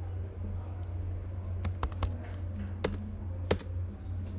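Computer keyboard keys being typed: a handful of separate sharp clicks, mostly in the second half, over a steady low hum.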